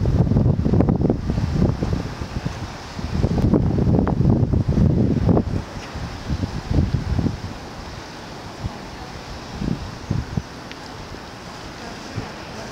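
Wind buffeting a camera's microphone: heavy, rough rumbling gusts for the first five seconds or so, then calmer with a few short gusts.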